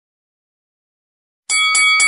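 Boxing-ring bell, struck twice in quick succession about one and a half seconds in, each strike ringing on with several clear tones.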